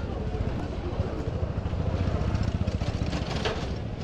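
Busy street ambience: a vehicle engine running close by under a steady low rumble, with voices of passers-by, swelling a little louder midway.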